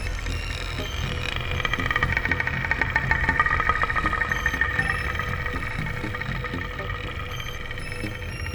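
Ambient space soundscape: a steady low rumbling drone, with a high fluttering whirr that swells up about a second in, peaks midway and fades out by about five seconds.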